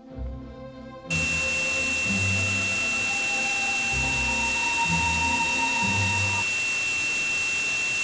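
Simulated tinnitus: a loud, static-like hiss with a steady high-pitched whistle starts suddenly about a second in and holds, a fainter lower tone sounding briefly in the middle. Slow low music notes play underneath.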